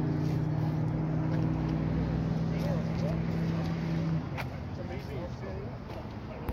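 A vehicle engine running at a steady speed with an even hum, cutting off about four seconds in, under a background of people talking.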